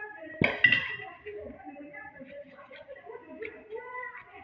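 Two sharp clinks close together about half a second in, a metal spoon knocking against the bowl of meat filling, with voices murmuring in the background.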